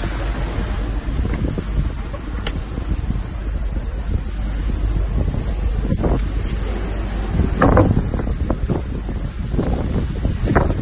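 Wind buffeting the microphone as a steady rumble, with a few short louder gusts or rustles in the second half.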